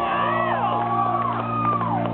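Live rock band playing a held chord on electric guitars with bass and drums between sung lines, heard from within the audience in a club hall. Voices in the crowd whoop and shout over the music.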